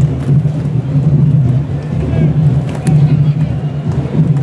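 Candombe drums of a comparsa's drum line playing a dense, pulsing low rhythm, with crowd voices.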